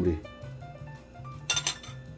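Soft background music, with a brief metallic clink of metal cooking tongs about one and a half seconds in.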